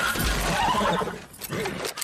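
A horse whinnying as it goes down with its rider, with a low heavy thud of the fall early in the cry.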